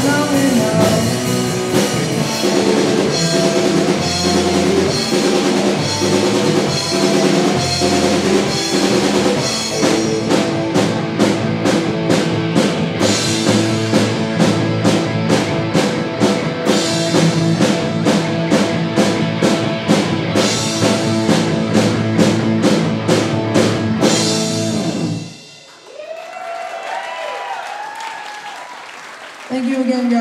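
Live rock band playing: electric guitars, bass guitar and drum kit with a sung lead vocal, the drums hitting a steady beat. The song stops abruptly about 25 seconds in, followed by a few seconds of quieter voices.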